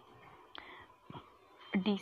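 A woman's faint breaths and soft whispered mouth sounds during a pause, then she starts speaking again near the end.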